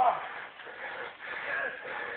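A man's voice trailing off at the start, then only faint low murmuring over quiet background hiss.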